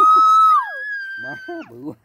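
A person's long, high-pitched drawn-out exclamation, an 'ơi' of 'trời ơi', held on one note, falling away, then held again on a higher note for about a second, followed by a short spoken word.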